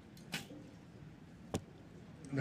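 Recurve bow shot: the arrow is released about a third of a second in with a short whoosh, and a sharp crack of it striking the target follows about 1.2 seconds later.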